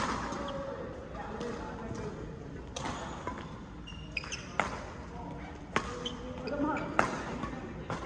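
Badminton rally: a racket strikes the shuttlecock with a sharp crack about every one to two seconds, four or five hits in all, the last two the loudest, over the voices of players in the hall.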